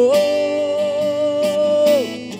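A male singer holds one long, steady note over strummed acoustic guitar, releasing it near the end.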